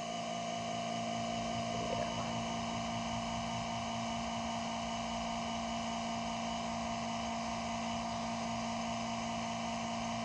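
Electric fuel-transfer pump on a yard fuel tank running with a steady hum while a truck is fueled.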